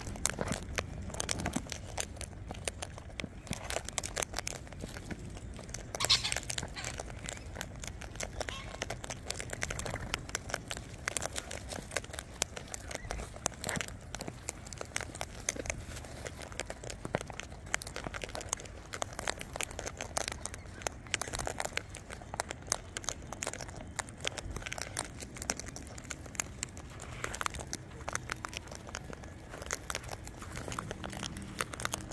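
Sulphur-crested cockatoos cracking sunflower seeds and rummaging with their beaks through a tub of seed mix close by: a dense, continuous crackle of small clicks and husk crunches, with one louder crackle about six seconds in.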